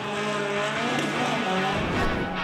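A Citroën rally car's engine revving up and down while its spinning tyres squeal through donuts.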